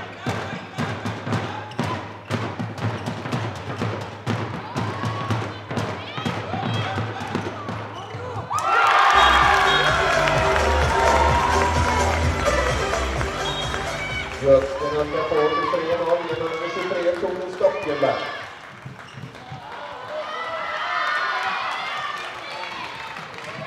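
A handball bouncing on a sports-hall floor, repeated sharp knocks echoing in the hall. About eight and a half seconds in, a sudden loud burst of crowd cheering and music with deep bass notes starts, then dies away about ten seconds later.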